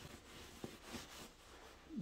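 Faint, soft rubbing and pressing of hands on a rolled-up damp bath towel, squeezing water out of the knitted fabric inside, with a couple of faint soft bumps about halfway through.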